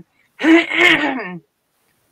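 A person clearing their throat once, a rough, voiced sound lasting about a second.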